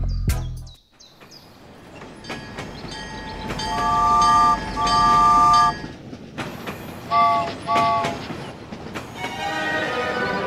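Toy steam locomotive running along its toy track with a steady rattle, sounding a three-note chord whistle in two long blasts and then two short ones. Background music fades out at the start and comes back near the end.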